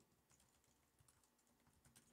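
Faint computer keyboard typing: a few soft, scattered keystrokes, with near silence between them.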